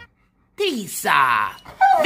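A large long-haired dog vocalizing, starting about half a second in: a drawn-out call that slides down in pitch, then a higher, wavering whine.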